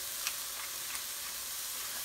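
Diced vegetables and beans sizzling steadily in a hot skillet, a constant hiss with a few faint pops.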